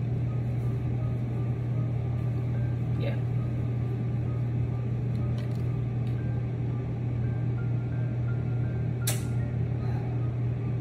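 A steady low mechanical hum runs throughout, with a sharp click about three seconds in and another near the end.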